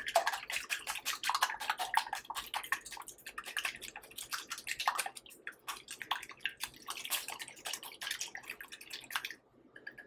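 Red silicone-coated whisk beating an egg mixture in a glass bowl: rapid wet clicking and sloshing that stops abruptly about nine seconds in.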